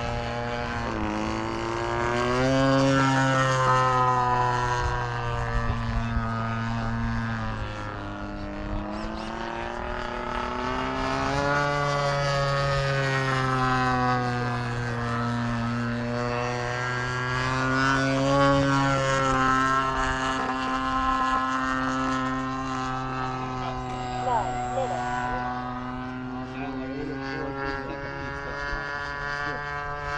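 T-28 Trojan's propeller engine droning steadily in flight, its pitch sliding down and back up several times as the plane passes and manoeuvres overhead.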